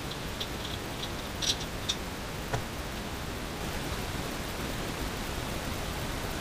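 Steady even hiss, with a few faint light metallic clinks about one and a half to two and a half seconds in as parts are handled on the engine block.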